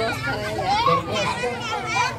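Several children's voices talking and calling out over one another as they play, with high-pitched voices overlapping throughout.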